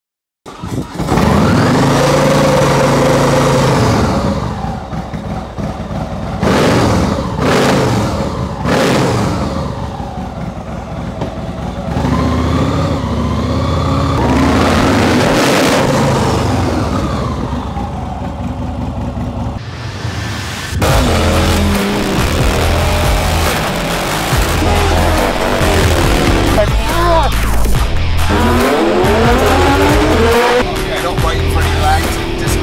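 Vehicle engines revving and passing by in quick succession, the pitch climbing and falling with each rev. A music track with a steady beat joins underneath about two-thirds of the way through.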